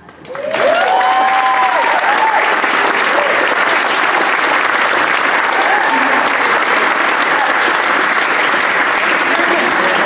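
Audience applauding and cheering, breaking out suddenly just after the start, with a few whoops in the first couple of seconds, then steady clapping.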